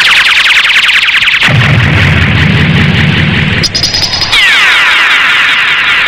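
Electronic sci-fi sound effect: a loud, fast warble of repeated falling chirps, joined by a low rumble from about a second and a half in until past four seconds, then slower falling sweeps.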